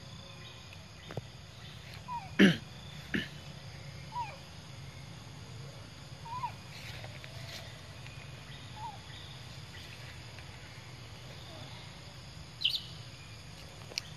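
Outdoor ambience with a steady low rumble, scattered with brief squeaky chirps from animals. There is a sharp, loud sound about two and a half seconds in, and another short loud one near the end.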